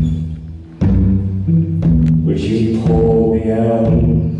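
Live solo guitar playing slow, reverberant chords, struck about a second in and again near two seconds and left to ring and fade, with a low drum thump on the strokes.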